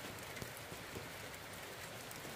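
Rain falling steadily on wet ground and puddles: a soft, even hiss with a few faint drip ticks.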